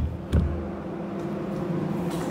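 Two low thumps in the first half second, then a steady low mechanical hum with a faint steady tone.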